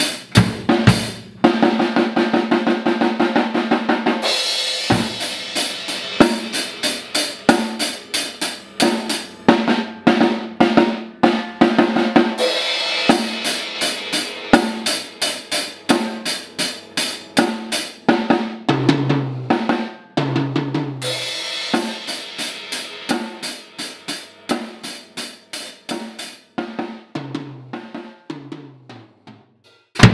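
Acoustic drum kit played by a child: a fast, upbeat groove of snare and bass drum with crash cymbal washes, broken by runs of tom hits about two-thirds of the way through and near the end.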